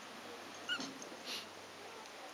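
A dog gives a single short, high yip a little under a second in, followed about half a second later by a brief breathy hiss.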